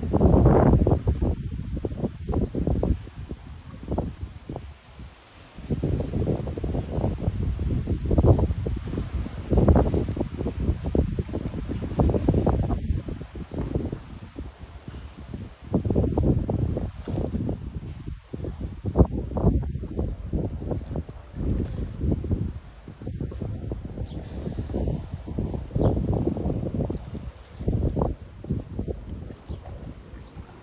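Wind buffeting the microphone in gusts, an uneven low rumble that swells and drops.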